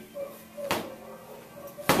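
Dynamax medicine ball tapped on the floor twice, about a second apart, during medicine-ball sit-ups.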